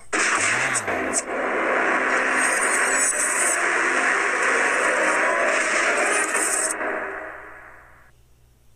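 A video intro sound effect played through the phone: a loud, steady rushing noise lasting several seconds, which loses its hiss near the end and fades out.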